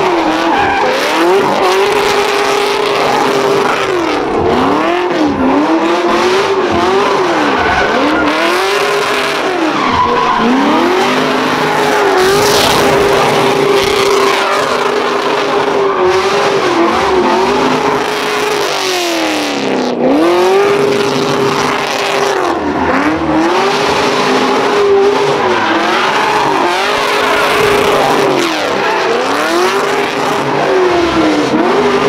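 Cadillac CTS-V's V8 revving high and held near the top of its range while the car drifts, its rear tyres squealing and spinning. The revs drop briefly and climb back many times, every second or two.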